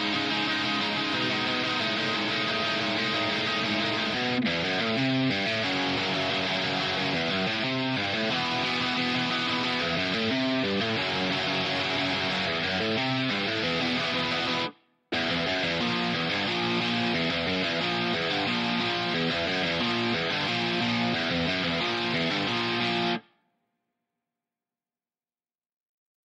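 Isolated electric guitar playing a fast riff of repeated power chords alone. It breaks off briefly about fifteen seconds in, then carries on and stops near the end.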